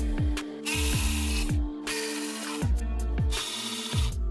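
Electronic background music with a beat and repeatedly falling bass notes. Over it, a cordless ratchet whirs in three short bursts.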